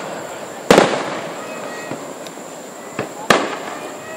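Aerial fireworks shells bursting: two loud booms, one just under a second in and one near the end, each trailing off in an echo, with a smaller pop just before the second.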